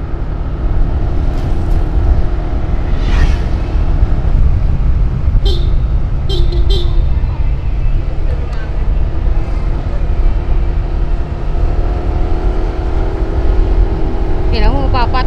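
Motorcycle riding through traffic: a heavy, steady wind rumble on the camera microphone over engine and road noise, with three short horn toots about halfway through.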